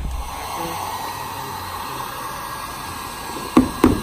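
Electric heat gun blowing hot air onto a dented plastic bumper to soften it, a steady rushing hiss. Two sharp knocks come near the end.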